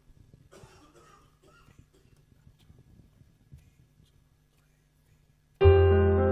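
A quiet pause with only faint small rustles, then about five and a half seconds in the band's opening chord sounds suddenly and loudly: piano with a deep bass note, held and ringing on.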